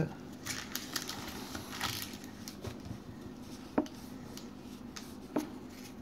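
Faint rustling and light clicks of a baseball card pack being opened and its cards handled, with one sharper click a little under four seconds in.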